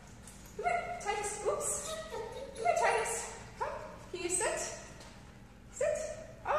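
A six-month-old giant schnauzer puppy vocalizing in a string of short, pitched calls that rise and fall, one or two a second, with a brief lull near the end.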